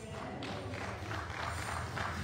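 Congregation clapping in a rapid, uneven patter, with some voices, as the tambourine-backed gospel song stops.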